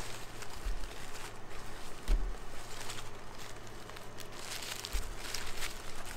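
Foil and paper burger wrappers crinkling in soft, irregular rustles as they are unwrapped, with a few dull low knocks.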